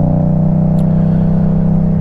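Motorcycle engine running at a steady, even pitch while the bike cruises at constant speed.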